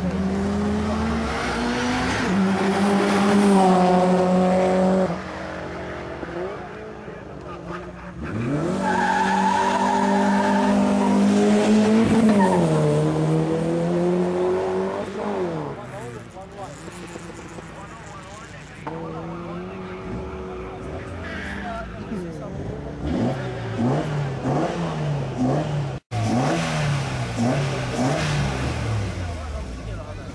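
Hillclimb race car engine at full throttle, its note climbing through the gears and stepping down at each shift, in two loud runs of about five seconds each. Quieter engine sounds follow later.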